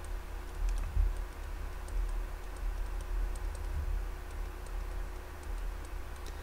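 Faint, irregular light ticks of a stylus tapping and moving on a pen tablet as an equation is handwritten, over a steady low hum.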